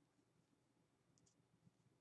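Near silence, with a couple of faint clicks a little over a second in.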